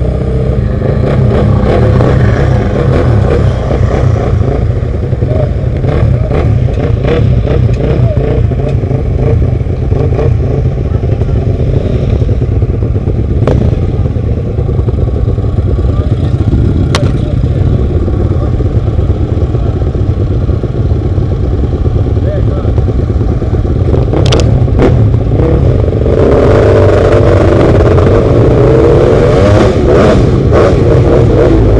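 Supermoto motorcycle engines idling close by, a loud steady low thrum, with engines revved up and down in the last few seconds.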